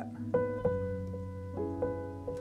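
A solo piano recording playing back: moody chords, with single notes struck about every half second over a held low chord. It is the short passage being picked out to chop into a looping sample.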